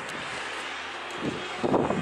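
Wind buffeting the handheld camera's microphone as a steady rush, with a louder noisy gust in the last half second.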